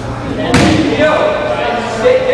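A basketball from a free throw hits the hoop about half a second in: one loud clang that rings on in the large gym, with voices around it.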